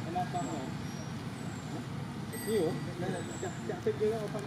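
Indistinct voices in the background over a steady low rumble, growing louder for a moment about two and a half seconds in.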